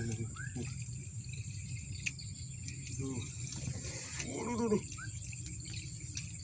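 Quiet outdoor ambience: a steady high-pitched insect drone over a low rumble, with a single sharp click about two seconds in.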